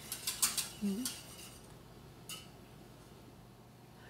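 A utensil clinking against a pot in a quick run of light taps, then one more clink a little past two seconds in.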